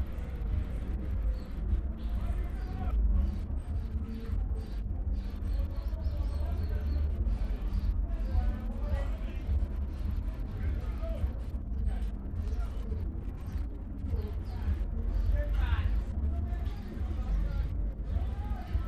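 A steady low rumble with faint, indistinct background voices and music.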